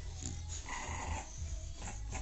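A dog making a short vocal sound about a third of the way in, over a steady low rumble.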